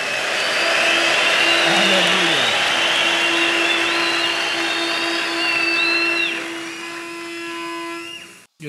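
A large congregation cheering and shouting, with high-pitched held cries rising and falling above the crowd noise and a steady low note sustained underneath. The cheering dies down about six seconds in.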